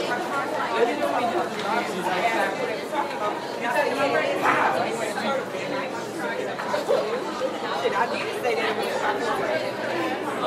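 Classroom ambience: many students' voices talking at once in a steady, indistinct hubbub, with no single voice standing out.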